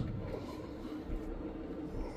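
Quiet room tone with a faint steady hum from a small motorised display turntable turning.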